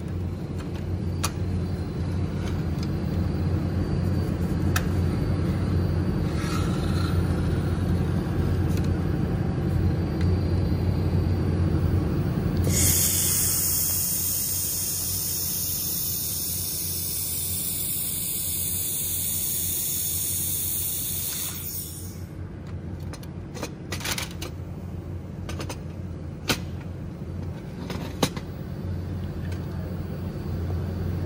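Handheld fiber laser welder running a seam on 2 mm aluminum: a loud, even high hiss from the welding torch starts suddenly about 13 s in and cuts off about 9 s later, over a steady low hum. A few light clicks and taps follow after the hiss stops.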